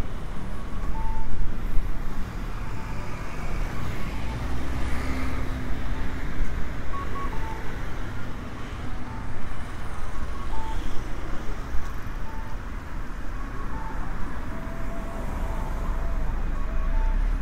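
Street traffic at a town intersection: cars and a scooter passing over a steady background, with short high-pitched beeps repeating about once a second.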